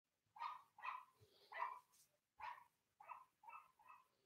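A dog barking faintly, seven short barks roughly half a second apart.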